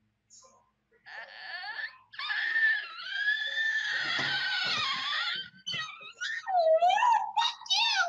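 A high, wavering wail in a person's voice that lasts several seconds, like a ghost's moan, followed by shorter swooping cries near the end.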